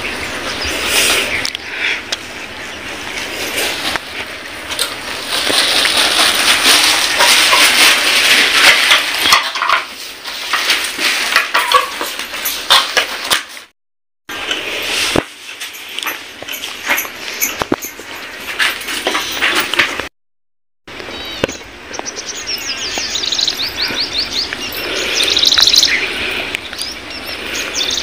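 Village ambience with birds chirping, a busy, fairly loud mix that cuts to silence twice for under a second.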